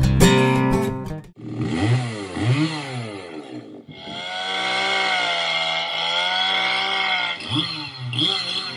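Chainsaw revving up and down a few times, then held at high speed as it cuts into a tree trunk, sawdust flying, for about three and a half seconds.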